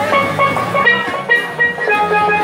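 A pair of steelpans played with rubber-tipped sticks: a quick melody of struck, ringing metal notes.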